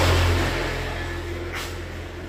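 A motor vehicle engine passing nearby, loudest at the start and fading away, over a steady low hum.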